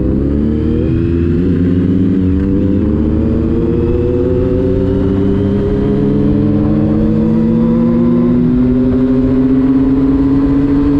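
Triumph Speed Triple motorcycle's inline three-cylinder engine running under load. The revs waver during the first couple of seconds, then the pitch climbs in a long, even rise as the bike accelerates through the gear.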